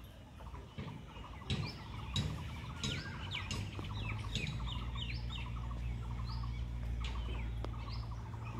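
Birds chirping in the surrounding trees: many short, high calls that sweep down in pitch, over a fast, regular chatter. A low steady hum comes in about halfway through.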